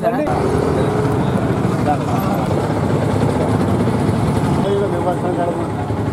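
Crowd of men chattering over one another, with a steady background rumble of street traffic.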